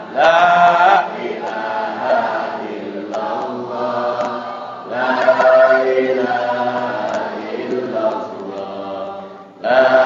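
A group of voices chanting an Islamic devotional text in unison, with long drawn-out phrases separated by brief breaks and a short dip just before the end.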